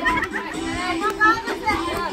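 Children's voices calling and chattering, with music playing underneath.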